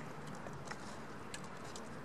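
Low background noise with a faint steady hum and a few soft, isolated clicks; no clear sound event.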